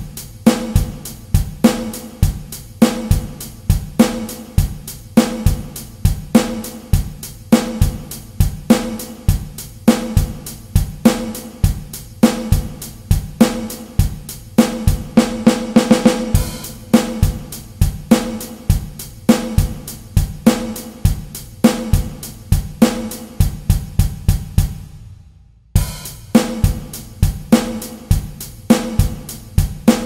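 Drum kit playing an easy pop drum part alone, a steady groove of kick drum, snare and hi-hat with cymbal crashes. The playing gets busier around the middle, stops dead for a moment about 25 seconds in, then comes straight back in.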